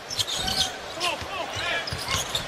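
Basketball arena game sound: crowd noise with faint voices, and a few short thumps from the ball and players on the hardwood court.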